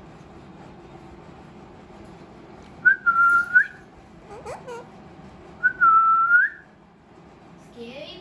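Alexandrine parakeet giving two clear, level whistles about three seconds apart, each under a second long with a quick upturn in pitch at the end.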